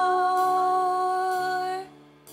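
A woman's voice holding one long sung note over steady keyboard chords in a worship song. The voice fades out shortly before the end, leaving the keyboard.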